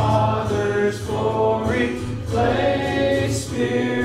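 Congregation singing a hymn together, held notes moving from one to the next about every half second to a second.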